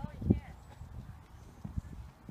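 Horse cantering on a sand arena, its hoofbeats heard as dull, irregular low thuds.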